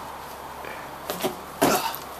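One thud of a person landing from a jump down off a concrete ledge onto gravel ground, about one and a half seconds in, short and sudden.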